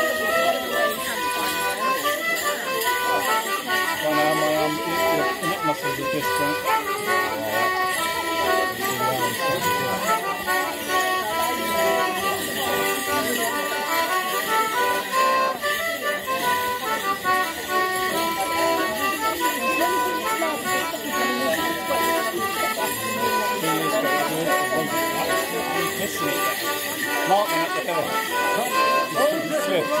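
A traditional English Morris dance tune played live on folk instruments, running steadily, with the jingle of the dancers' leg bells over it.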